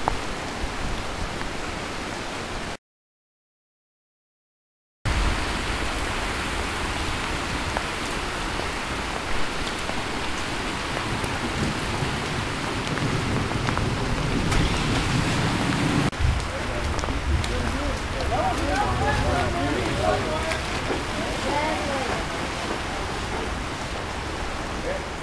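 Rain and running floodwater: a steady hiss. The sound cuts out completely for about two seconds near the start.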